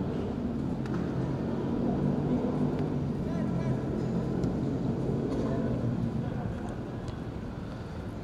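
Faint, distant shouts from players on a football pitch over a steady low rumble.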